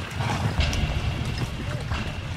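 Horses' hooves clip-clopping over a low, steady background noise.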